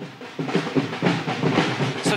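Dhol drums beaten in a fast, steady rhythm, with the noise of a celebrating crowd behind.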